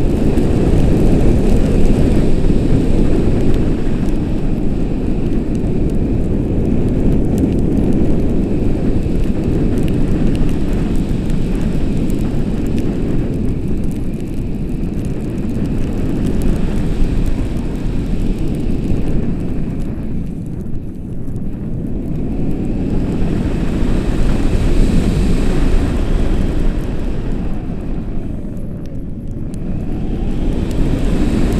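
Wind rushing over an action camera's microphone on a tandem paraglider in flight: a loud low rumble that rises and falls, easing a little about twenty seconds in and again near the end.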